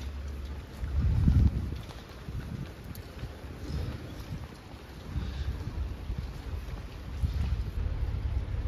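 Wind buffeting the microphone as a gusty low rumble, strongest in a surge about a second in.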